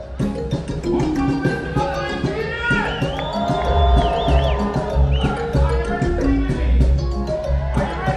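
Live reggae band playing: drums, bass, guitar and keyboard, with a vocalist on a microphone. A deep bass line comes in more strongly about three seconds in, under a held, wavering melodic line.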